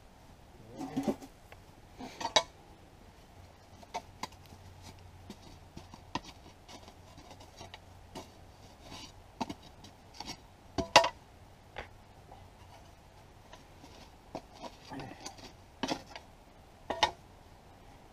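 Scattered clinks, knocks and scrapes of bricks and clay stove pipe being handled and shifted at a small brick stove, the sharpest knock about eleven seconds in.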